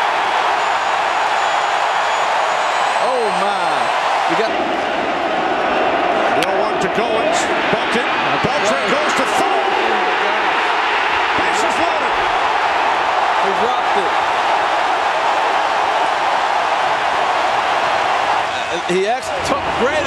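A large stadium crowd cheering loudly and without a break, a dense wash of many voices shouting together.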